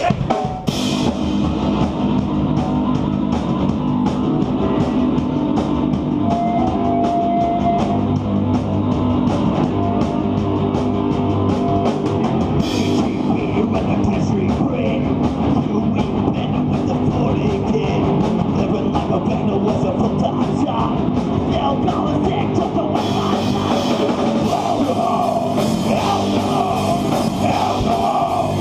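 Live rock band, electric guitars, bass and drum kit, playing loud with a steady drum beat; the cymbals come in heavier about 23 seconds in.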